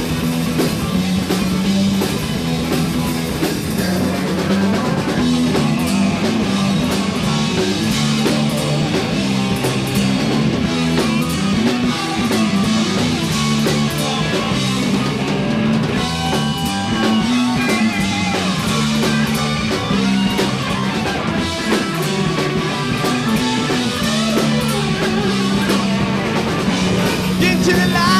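Heavy metal band playing live: electric guitars, bass and drum kit in an instrumental passage without vocals, loud and continuous with steady cymbal strokes.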